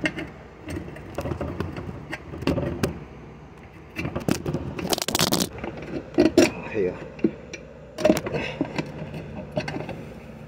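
Metal tools scraping and clinking against a small mower tire and its rim as the bead is levered on with a screwdriver and pry bar, in a run of irregular knocks and scrapes. A loud clattering rustle comes about five seconds in.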